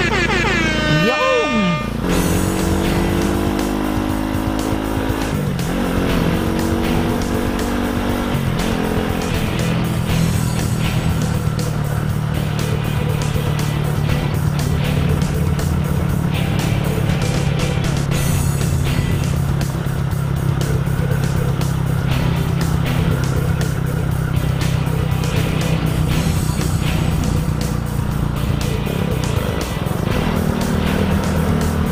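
Single-cylinder Honda CBR150R motorcycle engine on the move. In the first few seconds its pitch climbs and drops through gear changes, then it settles into a steady drone at cruising speed. Music with a regular beat plays over it.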